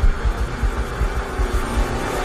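Film soundtrack: a deep, steady low rumble under a faint sustained musical drone, with no speech.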